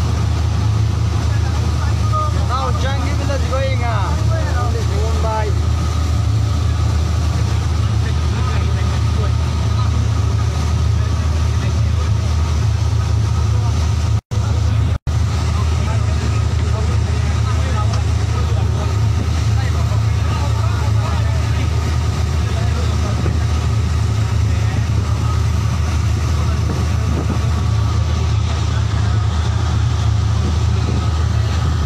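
A motorboat's engine running steadily with a low drone, heard from on board the moving boat. The sound drops out briefly twice near the middle.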